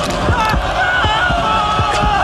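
Film soundtrack of a ritual scene: deep drums beating in a quick, steady rhythm under a crowd of chanting voices, with a high, wavering voice on top.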